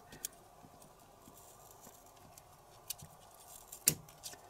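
Small scissors snipping size 10 cotton crochet thread wound on a plastic tassel maker, the blades set in the tool's channel: a few separate sharp snips, the loudest just before the end.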